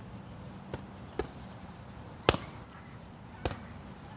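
Punches landing on boxing focus mitts: four sharp slaps at uneven intervals, the one a little past halfway the loudest.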